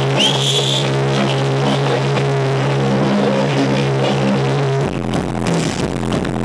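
Electronic dance music from a DJ set, played loud over a club sound system, with a held deep bass line and a short high rising tone about a quarter-second in. Just before the five-second mark the held bass drops out and the music turns choppy.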